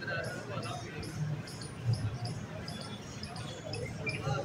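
Faint voices and low thumps, under short high chirps that repeat about three times a second.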